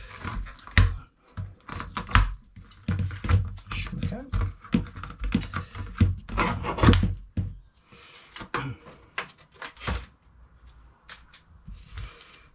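Cardboard backing cards being pulled and torn off two small pick mattocks, with rustling, scraping and irregular clicks and knocks as the tools are handled on the bench. It is busiest in the first seven seconds or so, then sparser.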